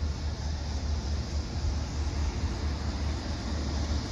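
Steady low rumble with an even hiss, with no distinct event: outdoor background noise.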